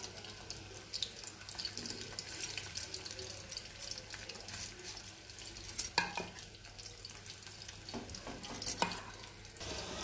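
Chicken pakodi deep-frying in hot oil in a kadai: a steady sizzle dotted with frequent small crackles, and a couple of louder sharp clicks about six and nine seconds in.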